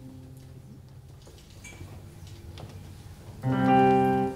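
Live keyboard music at the start of a song: quiet held notes, then a loud chord struck about three and a half seconds in and held for just under a second.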